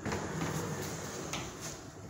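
A wooden sliding barn door rolling open along its overhead track: a steady rolling rumble lasting nearly two seconds, easing off slightly toward the end.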